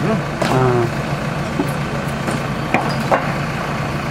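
Diesel engine of a backhoe loader running steadily, with a few light clicks about three seconds in.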